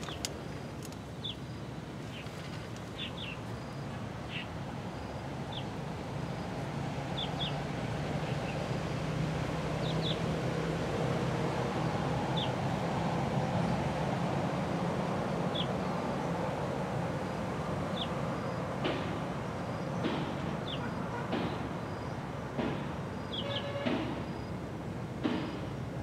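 A low motor drone from something passing at a distance, swelling to its loudest about halfway through and fading again. Short, high bird chirps are scattered throughout.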